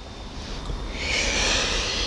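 A person drawing a breath in close to the microphone: a hissing intake of about a second, starting halfway through.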